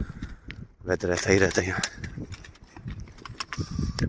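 A man speaking briefly about a second in, with footsteps on a path and light clicks around it.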